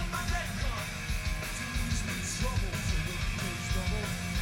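Hard rock band playing live: electric guitar over bass guitar and drums, with steady drum and cymbal hits through the passage.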